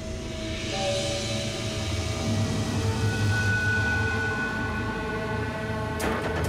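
Dramatic background score: long held tones over a steady low rumble, swelling in loudness over the first few seconds.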